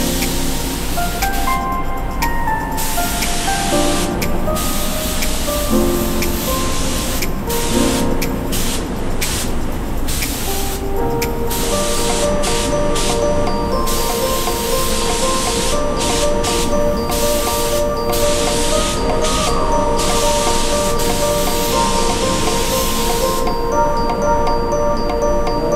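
Iwata Supernova WS-400 spray gun hissing as it sprays clear coat onto small parts, in passes broken by short stops where the trigger is let off. Background music plays throughout.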